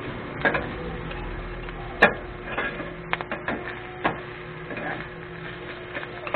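Metal spatulas and scrapers knocking and scraping on a flat steel griddle as chopped pork sisig is tossed and chopped, in irregular clanks, the sharpest about two seconds in.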